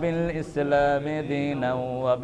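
A man's voice chanting an Arabic phrase in a drawn-out, melodic style, with long held notes that slide between pitches.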